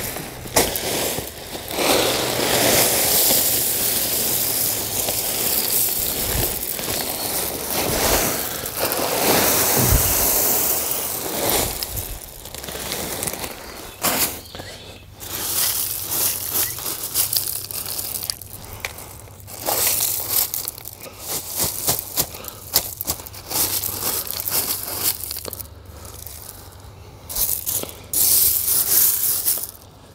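White gravel poured from a bag into a hole around buried irrigation valves: a long, steady rush of stones for about ten seconds. After that come stop-start crunching and scraping as the stones are spread and pushed around by hand.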